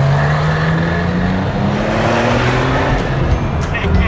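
Car engine accelerating, its note rising steadily for about three seconds over a loud rushing noise.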